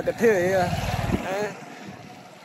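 A man's voice speaking briefly, over a low wind rumble on the microphone that drops away after about a second.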